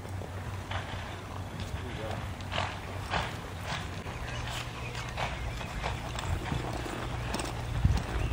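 Hoofbeats of a cutting horse on arena dirt as it darts and turns to hold a calf: a run of short, irregular strikes, roughly one every half second, with heavier thumps near the end.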